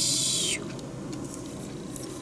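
Plastic model kit parts squeaking as they are pressed together: one shrill squeak that ends with a slight drop in pitch about half a second in, followed by faint small clicks of handling.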